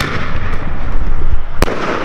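A 1.75-inch aerial firework shell, fired from its tube just as the sound begins, bursts with a sharp bang about a second and a half later.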